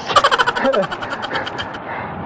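A man laughing in a quick run of breathy pulses that stops shortly before the end, over a low steady noise from riding.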